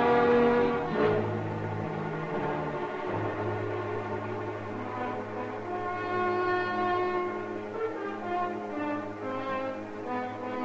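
Orchestral bridge music led by brass and French horn, playing sustained chords over a low held note that comes in about a second in. It marks a scene change in the radio drama.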